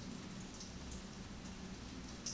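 Faint room tone: a steady hiss with a low hum underneath.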